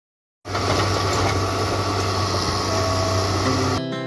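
Hitachi hydraulic excavator's diesel engine running at work, a steady low rumble under a hiss of machine noise. It starts about half a second in and cuts off abruptly just before the end, where music begins.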